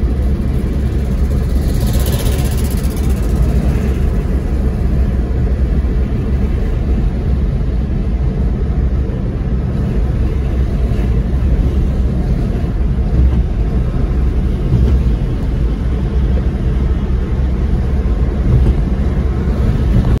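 Car driving along a highway: a steady low rumble of engine and tyre noise, with a brief hiss about two seconds in.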